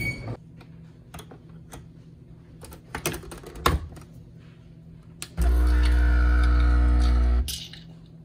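An illy capsule coffee machine being worked: a few light clicks and taps as it is handled and its button pressed, then its pump buzzes loudly and steadily for about two seconds and cuts off.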